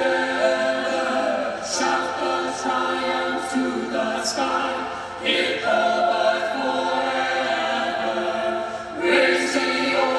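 Mixed-voice choir singing unaccompanied in sustained chords, the sung consonants hissing through a few times and the sound swelling louder about five seconds in and again near the end.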